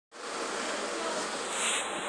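Steady hiss of room background noise with a faint hum in it, swelling slightly near the end.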